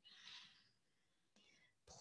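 Near silence, with a woman's faint breath close to the microphone in the first half second and another short, fainter breath sound near the end.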